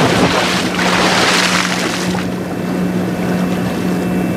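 Cartoon splash sound effect as something drops into water, followed by a steady rushing, surf-like water noise that eases a little after about two seconds. A steady low hum runs underneath.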